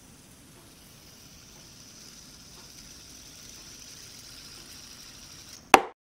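Faint steady hiss of room tone and recording noise with a thin high whine, swelling slightly, then a single sharp click shortly before the end, after which the sound cuts off.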